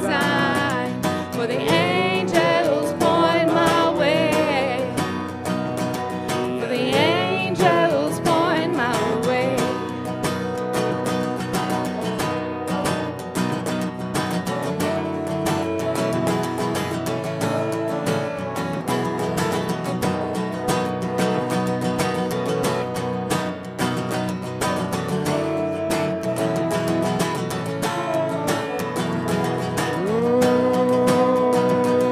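Worship band playing a hymn on acoustic guitars with a trombone and drums. Voices sing a line in the first several seconds, then the band plays an instrumental interlude until the end.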